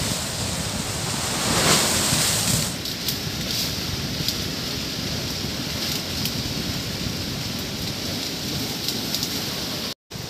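Steady rushing outdoor noise, swelling briefly about two seconds in, then with scattered light clicks over it.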